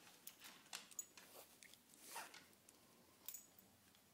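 Near silence with a few faint clicks and rustles from a hand working at a dog's collar and leash.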